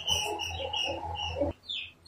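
Small birds chirping in short, quick, high notes over a low rumble. The rumble stops partway through, and a couple of falling chirps follow near the end.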